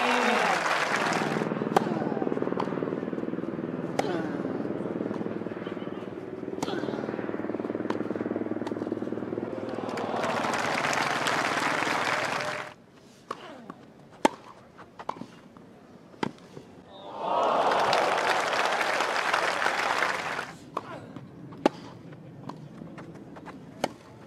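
Crowd applauding and cheering, with voices mixed in, then a quiet stretch with a few sharp racket strikes on a tennis ball during a rally. A second burst of applause follows, and then more single ball strikes near the end.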